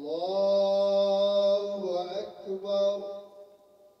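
A man's voice chanting an Islamic prayer call: one long note sliding up at the start and held, then a few shorter melodic notes, tailing off before the end.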